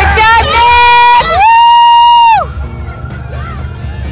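A spectator close to the microphone whoops twice, loud high held cries of about a second each. The second is longer and rises in and falls away at the end. Underneath runs the babble of a cheering crowd.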